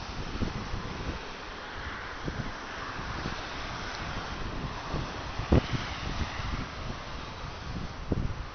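Wind buffeting the camera microphone in low, uneven rumbling gusts, with one sharp thump about five and a half seconds in.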